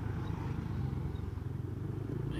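Motorcycle engine running at a steady cruising speed while riding, a low even hum.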